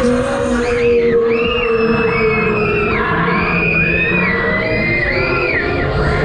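Several riders screaming, one long high cry overlapping the next, over the ride's music.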